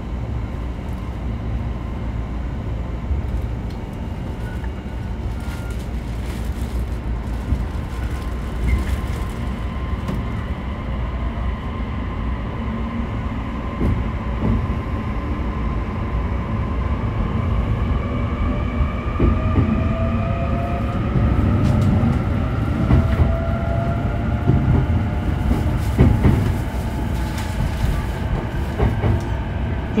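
E531-series electric train's traction motors and inverter starting it from a stop and accelerating, heard from inside a motor car: a low rumble with a whine that climbs steadily in pitch through the second half as the train gathers speed, with scattered knocks from the wheels over the track.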